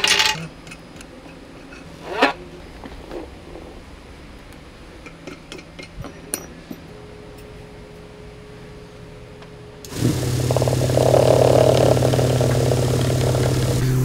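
Vibratory tumbler running loaded with walnut-shell media, starting abruptly about ten seconds in: a steady motor hum under a dense hiss of churning media. Before it, a few light clicks and knocks.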